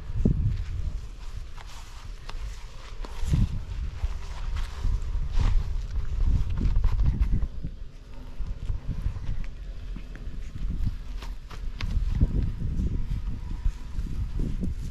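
Footsteps of a person walking on grass and a dirt path, with an uneven low rumble on the microphone.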